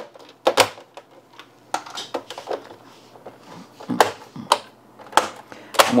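Plastic clips of a Dell Inspiron 3477 all-in-one's back cover snapping into place as the cover is pressed down by hand: a scattered series of sharp clicks, the loudest near the start and in the last two seconds.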